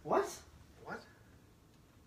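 Two short vocal cries rising in pitch, the first louder, about a second apart.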